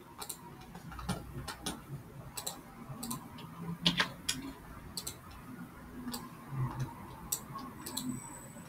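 Irregular light clicks and taps, two or three a second at uneven spacing.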